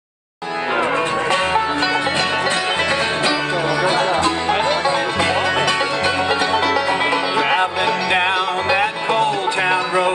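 Bluegrass string band playing an instrumental intro on banjo, fiddle, mandolin, acoustic guitar and upright bass, cutting in abruptly about half a second in.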